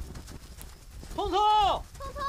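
A high-pitched voice calling out the name "Congcong" in two drawn-out syllables, starting about a second in, over a faint low rumble.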